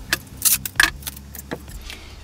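Wooden boards and clamps being handled on a workbench: a quick run of sharp clacks and knocks in the first second, then one more about a second and a half in.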